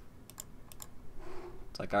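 About five quick, sharp clicks at a computer in the first second, then a voice starts near the end.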